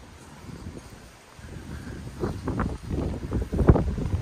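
Wind buffeting the microphone: a soft hiss at first, then louder low gusts from about a second and a half in, the strongest just before the end.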